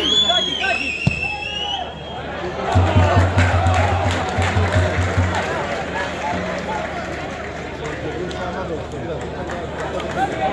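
Voices calling out and shouting around a football pitch during play, over a general hubbub of voices. A high whistle sounds in the first two seconds, and a low rumble hits the microphone from about three to five seconds in.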